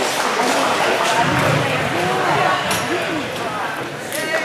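Indistinct talking from several people in a large hall, voices overlapping with no clear words.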